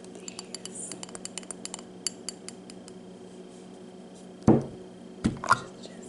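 Hands working a glass jar of maraschino cherries: a quick run of light clicks and taps on the jar, then the lid twisted off with a loud thump about two-thirds of the way in and a couple more knocks near the end.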